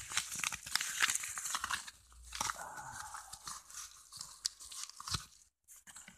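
A manila mailing envelope being handled and torn open: paper rustling, crinkling and tearing on and off, with small clicks.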